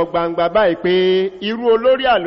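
A man's voice speaking in a sing-song, chant-like cadence, with some syllables held on one level pitch.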